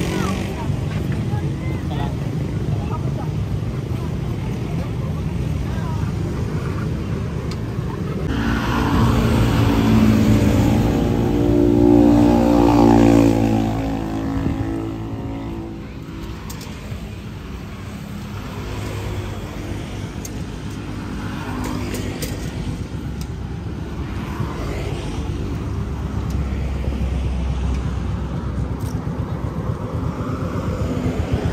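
Urban street traffic: a motor vehicle's engine passes close by, swelling from about eight seconds in, loudest around twelve seconds and fading by fifteen, its pitch rising then falling. People's voices mix with the steady traffic noise.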